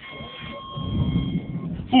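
Car engine revving under load as the car crosses deep dirt ruts, growing louder over the first second and a half, with a steady high-pitched tone above it that stops just before the end. A shout breaks in right at the end.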